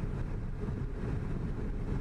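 Steady low rumbling background noise with no distinct events, heard in a gap in the talk.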